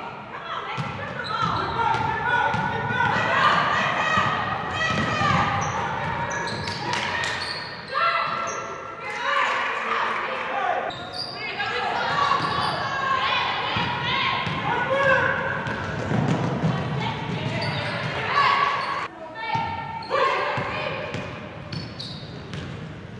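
Live game sound of a basketball game in a gymnasium: players, coaches and spectators shouting and calling out almost without pause, with the basketball bouncing on the hardwood court as it is dribbled.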